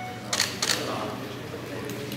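A DSLR camera shutter firing twice in quick succession, about half a second in.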